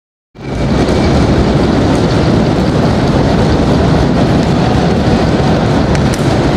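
Steady, loud rumbling noise of an ice hockey arena during play, heavy in the low end, with a faint sharp knock about two seconds in.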